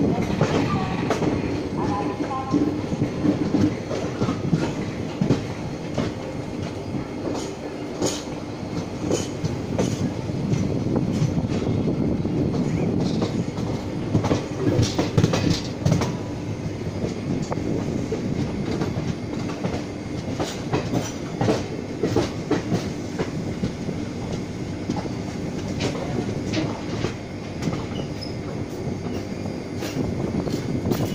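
Passenger coach of a moving express train heard from its doorway: a steady rumble of wheels on track, with irregular clacks as the wheels cross rail joints and points while the train pulls out of the station.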